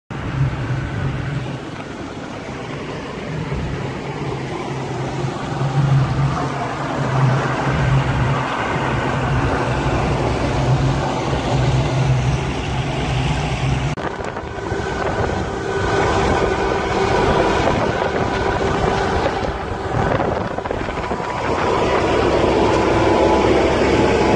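Motorboat running at speed: a steady engine drone mixed with water rushing past the hull and wind buffeting the microphone. The sound changes abruptly about halfway through, and the engine note is louder near the end.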